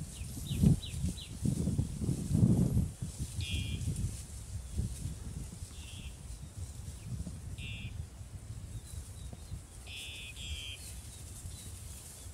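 Water buffalo grazing close by in dry grass: irregular low thumps and rustling for the first three seconds, then quieter. Short high bird chirps come several times, a pair of them near the end.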